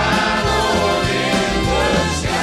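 Live country-gospel band music: a man singing lead at the microphone over acoustic guitars and bass, with other voices singing along.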